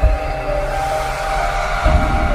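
A news channel's logo sting: dramatic electronic music that starts abruptly, with a deep rumble under a few sustained high tones.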